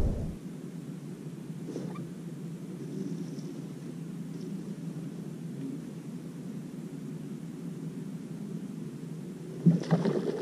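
Steady low rumble of wind and water noise on a boat-mounted action camera while a bass angler reels in slowly. Near the end there are a few brief louder sounds as a hooked bass splashes at the surface.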